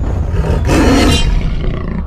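Big-cat roar sound effect, about half a second long near the middle, over a deep steady rumble.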